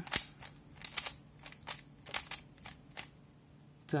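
Stickerless plastic 3x3 puzzle cube having its layers turned quickly by hand to reverse a move sequence: a run of sharp plastic clicks and clacks, about two or three a second, the loudest at the very start, growing sparser near the end.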